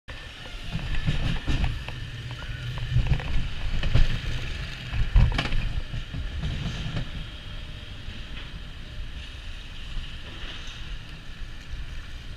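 Wild mouse roller coaster car running on its steel track as it leaves the station and starts climbing: a low rumble and clatter of the wheels, with heavy knocks about four and five seconds in. It then settles into a steadier, quieter rattle.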